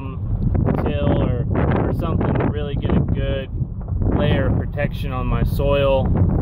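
A man talking in a vehicle cab, over a steady low rumble.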